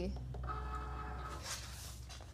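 Cricut cutting machine's roller motor whirring steadily for about a second as it feeds the cutting mat out (unloading), followed by a brief soft rustle as the mat is pulled free.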